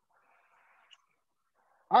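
Near silence: a faint, soft, toneless noise lasting about a second, then a man starts speaking just before the end.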